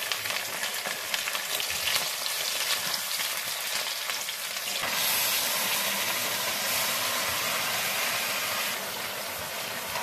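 Potato pieces frying in hot oil in a kadai, with a crackling sizzle. About halfway through, marinated chicken is tipped into the pan and the sizzle becomes louder and steadier.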